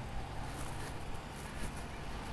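Steady, faint outdoor background noise: a low hum and hiss with no distinct event.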